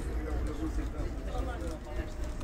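Low, steady engine rumble of a 1982 Volvo B10R-55 diesel city bus under way, heard inside the passenger cabin, with passengers talking over it.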